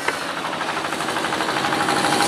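A small engine running steadily with a rapid, even knocking beat, getting a little louder.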